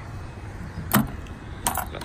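Hinged metal fuel-tank filler cap on a 1977 Honda CB400 Four snapping shut with one sharp click about a second in, then a short metallic clatter of the key in the cap's lock near the end.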